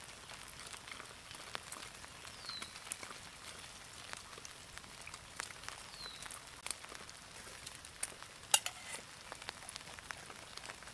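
Small wood campfire crackling, with scattered irregular pops and one sharp pop about eight and a half seconds in, over a faint hiss of light rain.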